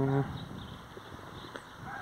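Quiet scraping and crunching of a steel spade working in loose soil and turf.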